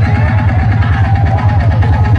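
DJ dance music played loud, with a heavy, fast bass beat.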